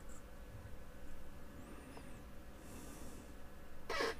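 Quiet room with faint handling noise as a small DC motor is fitted to a black acrylic mounting plate, with no distinct knocks or clicks.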